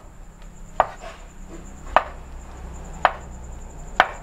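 Meat cleaver chopping hot dogs into chunks on a wooden cutting board: about four sharp knocks, roughly one a second.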